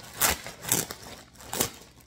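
Clear plastic clothing packaging crinkling in three short rustles as it is handled.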